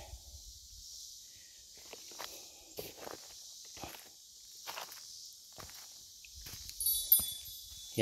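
Irregular soft footsteps on grass and mulch over a steady high background hiss. A brief high-pitched chirp about seven seconds in is the loudest sound.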